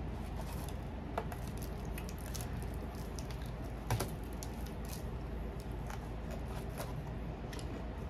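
Quiet eating sounds: chewing and a few small, scattered clicks, the clearest about four seconds in, over a steady low hum.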